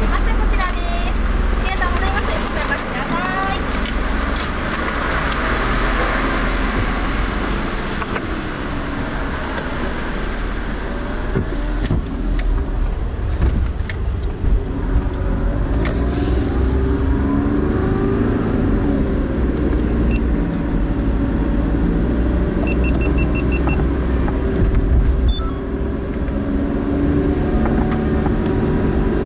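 Car engine and tyre noise from inside the cabin as the car drives on a wet road. The engine note rises as it picks up speed about halfway through, then runs steadily.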